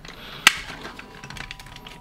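A sharp plastic click about half a second in, then faint small clicks and handling, as the head and jaw of a 1996 Beast Wars Megatron T-rex action figure are moved by hand.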